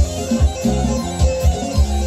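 Live amplified band playing a Macedonian folk dance song, with a heavy drum beat about two to three times a second under a melody line.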